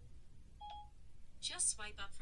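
A single short, quiet electronic beep from an iPhone about two-thirds of a second in, as Siri finishes listening. From about a second and a half, Siri's synthesized voice starts its spoken reply through the phone's small speaker.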